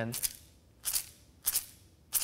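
A hand-held plastic egg shaker, taped with electrical tape, shaken in three short, evenly spaced strokes, each a brief rattling hiss.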